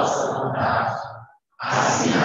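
Many voices praying the Lord's Prayer aloud together in Portuguese, in unison. One phrase ends about 1.4 s in and the next begins after a brief pause.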